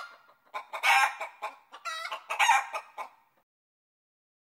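Chicken clucking in a quick run of short calls, used as the alarm for the end of a countdown timer. It stops a little before the end.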